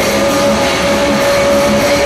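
Heavy metal band playing live: distorted electric guitars, bass and drums, with one long note held steady until near the end.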